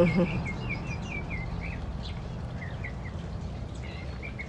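A small bird chirping: short high notes repeated about four times a second, pausing briefly midway, over a steady low outdoor background noise.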